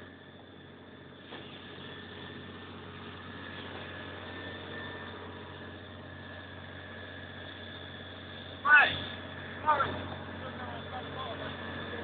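Fire engine running with a steady drone, broken by two short shouts about nine and ten seconds in.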